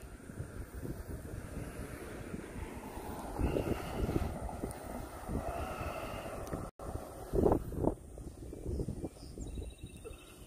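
Outdoor traffic noise: an SUV driving by on the road, with wind buffeting the phone's microphone. There are a few louder knocks partway through and a brief total break in the audio about two-thirds of the way in.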